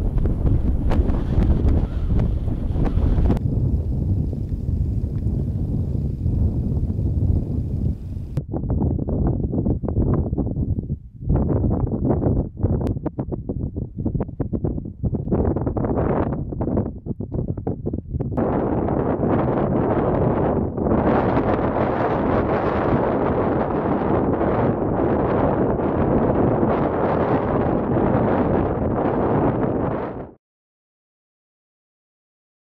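Strong mountain gale buffeting the microphone: a loud, rushing wind noise heaviest in the low end. Through the middle it comes in short gusts with brief lulls, then from about two-thirds of the way in it settles into a heavier, steadier blast.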